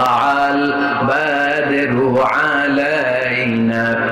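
Islamic nasheed: a voice chanting a slow melody in long, drawn-out notes that slide between pitches.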